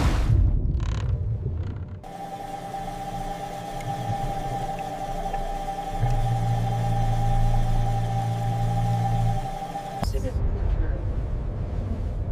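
Churning water as a submersible breaks the surface on its cable. It cuts to a steady machinery hum with a held mid-pitched tone; a deep drone joins it about halfway through and stops shortly before another abrupt cut to a low rumble.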